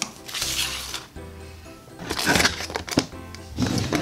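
Background music, over short bursts of paper crinkling and rustling as a folded collector's guide leaflet is handled.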